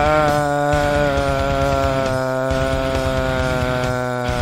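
A metal singer holding one long, steady sung note over a heavy metal band.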